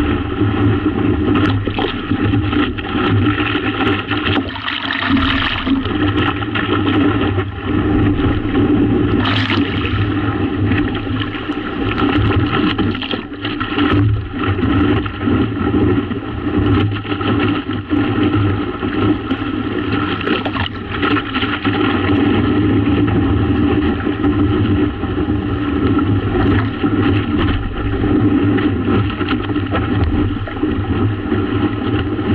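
Water rushing and splashing along the hull of a stand-up paddleboard moving fast over choppy water, mixed with wind buffeting the board-mounted camera's microphone; a loud, steady, fluttering noise.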